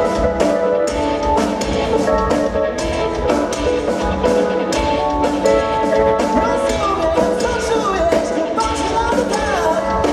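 A live rock band playing: electric guitar, bass guitar and drum kit, with a steady beat.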